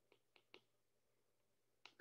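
Near silence, broken by a few faint, brief taps of a stylus writing on a tablet screen.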